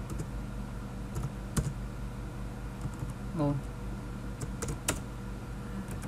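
Computer keyboard keystrokes: scattered, irregular single key presses while text is typed, over a steady low electrical hum.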